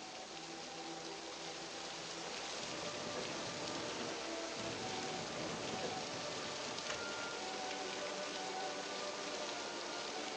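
Steady heavy rain falling, with film-score music holding long notes underneath.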